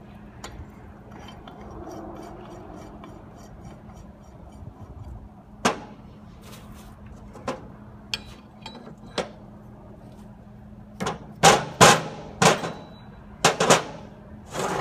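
Metal-on-metal clicks and knocks from a large spanner wrench working on the steel actuator body of a rod rotator. A few sharp clicks come around the middle, then a quick run of louder clanks near the end.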